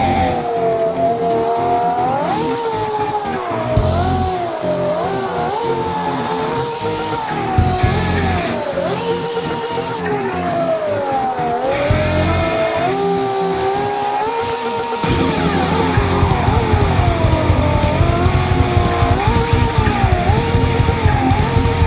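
Drifting car tyre squeal, a wavering tone that keeps sliding up and down in pitch as the car slides, over rock music that grows louder near the end.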